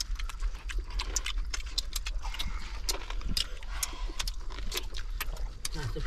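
Close-up eating sounds: lip smacking and chewing, irregular wet clicks several times a second. A brief voice sound comes near the end.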